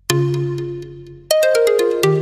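Show intro music: a chord of bright struck notes that fades, then a quick run of notes stepping down in pitch just past a second in.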